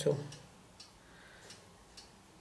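Near silence after a brief spoken word, broken by three faint, sharp ticks at uneven intervals.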